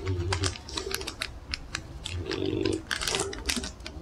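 Clear plastic resealable treat pouch being handled and crinkled in the hands, a quick run of sharp crackles and clicks.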